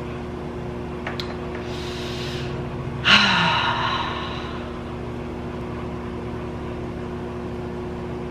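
A person takes a breath in and then lets out a loud sigh about three seconds in, the breath fading over a second or so. Under it runs the steady hum of a microwave oven cooking.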